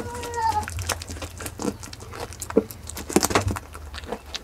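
Young goat biting and chewing the spiky rind of a jackfruit at close range: irregular wet crunches and clicks. A short high animal call, falling slightly in pitch, sounds right at the start, over a steady low hum.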